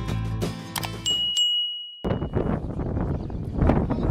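Music with a steady beat that stops about a second and a half in, while a bright bell-like notification ding rings out and fades over about a second and a half. From about two seconds in, a noisy outdoor background takes over.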